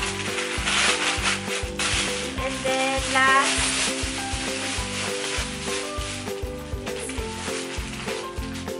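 Plastic bag crinkling and rustling as clothes are handled and pulled from it, loudest in the first half, over background music with a steady beat.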